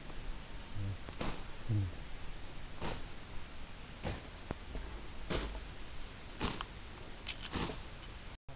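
A hiker breathing hard close to the microphone while climbing a mountain trail, about one breath every second or so.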